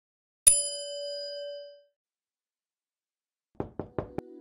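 A notification-bell "ding" sound effect: one struck chime about half a second in, ringing and dying away over about a second and a half. Near the end come a few quick, sharp knocks.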